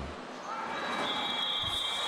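A long, steady, high-pitched referee's whistle begins about two-thirds of a second in and is held over arena crowd noise. It signals the end of the first half of a futsal match.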